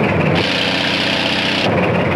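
Crawler tractor engine running steadily, with a hissing layer over it for about a second in the middle.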